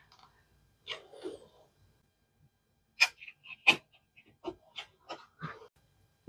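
A few light taps and clicks, the sharpest about three seconds in, from a clear acrylic stamp block being pressed onto and lifted off a painted wooden base during rubber stamping.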